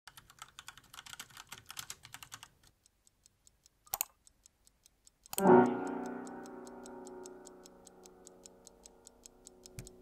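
Rapid typing on a laptop keyboard for the first couple of seconds, then even clock-like ticking about three times a second. About five seconds in, a loud low musical chord strikes and slowly rings out over the ticking.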